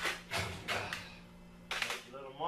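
A metal straightedge being handled and laid on a flat sheet of galvanized sheet metal: a few short scrapes and taps of metal on metal, the sharpest near the end.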